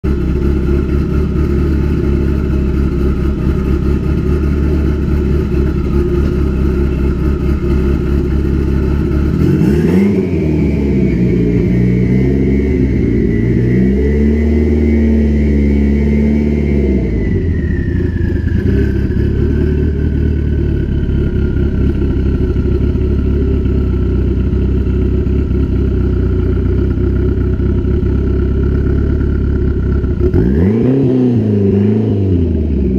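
Mitsubishi Eclipse four-cylinder engine idling, then jumping to a higher held engine speed about ten seconds in and easing back down to idle over a few seconds, with a steady whine that rises and falls with the revs.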